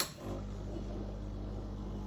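Breville Oracle Touch espresso machine's pump starting a double-shot brew, then running with a steady hum.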